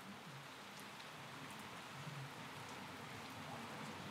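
Faint, steady rain with scattered light drop ticks, growing slightly louder.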